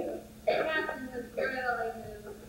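Only speech: a woman's voice speaking two short phrases of stage dialogue, with a steady low hum underneath.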